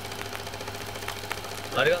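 Steady low hum in a car cabin, with a couple of faint clicks. Near the end a man says "arigato".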